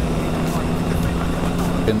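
2008 Triumph Speed Triple's three-cylinder engine running at a steady speed while riding, a constant hum with a rushing wind and road noise over it.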